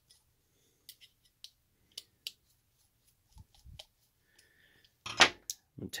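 Scattered faint clicks and ticks of a 2 mm hex driver working small tapered-head screws out of a hand-held plastic cush drive, with a louder short handling sound about five seconds in.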